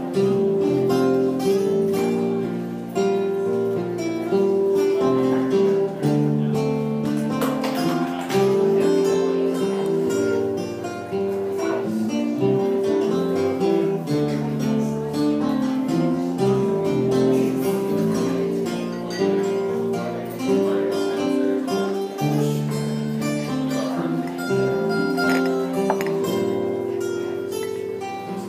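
Instrumental passage of a live acoustic song: two acoustic guitars and an electric bass guitar playing, with a chord and bass pattern that repeats about every eight seconds.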